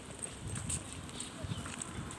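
Footsteps on a concrete path, landing about once a second, with small birds chirping in the trees around.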